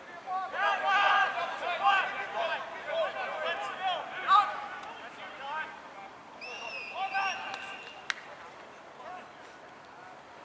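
Several rugby players shouting short calls to each other across the field during a training drill, voices overlapping, busiest in the first half and thinning out later. A single sharp knock about eight seconds in.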